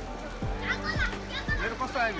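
Several people's voices calling and chattering at once, with short high calls that rise and fall, over steady background music.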